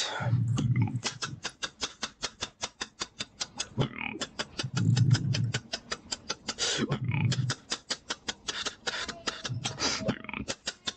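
Human beatboxing: a fast run of sharp hi-hat clicks, about five or six a second, broken by a deep bass note four times, held up to about a second each.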